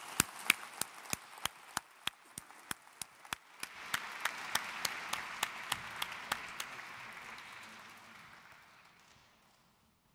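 Audience applauding, with one pair of hands clapping close to the microphone, loud and even at about three claps a second. The crowd's applause swells about four seconds in, then dies away near the end.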